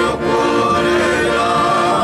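A group of men singing a song together in chorus, several voices holding and gliding between notes.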